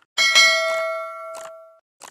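Notification-bell sound effect: a bright bell ding that rings out and fades over about a second and a half, with short clicks just before it and near its end.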